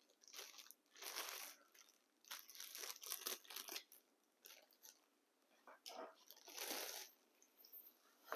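Plastic packaging crinkling in short, quiet bursts while telephone cords are handled and laid down.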